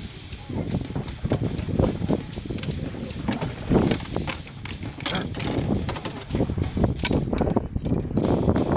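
Irregular knocks, rustling and splashing as a hooked largemouth bass is landed with a net beside a small boat, the net, rod and boat handled close by. There are a few sharper clacks about four and five seconds in.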